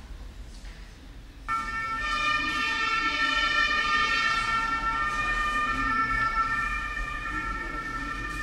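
A sudden chord of several steady high tones starts about a second and a half in and holds, with slight shifts in pitch, over a low murmur.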